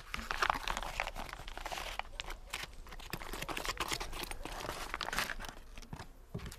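Foil butter wrapper crinkling and crackling as a block of butter is unwrapped and handled, a dense run of small crinkles throughout.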